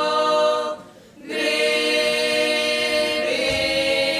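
A small folk ensemble of mostly women's voices singing a Latgalian folk song a cappella, in long held notes. The singing breaks off briefly for a breath about a second in, then goes on.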